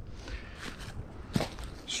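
Footsteps crunching through dry fallen leaves, with a low rustle and one sharper crunch about one and a half seconds in.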